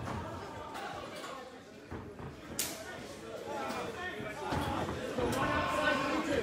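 Indistinct voices of onlookers in a large, echoing hall, growing louder toward the end, with one sharp smack about two and a half seconds in.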